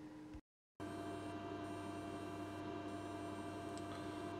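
Steady electrical hum made of several fixed tones, cut by a moment of dead silence about half a second in.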